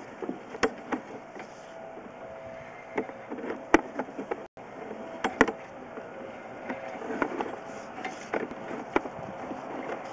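Sewer inspection camera and its push cable being pulled back out of the pipe: irregular sharp clicks and knocks, about one or two a second, over a steady faint hum.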